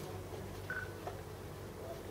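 A steady, faint low electrical hum, with one brief high beep about two thirds of a second in.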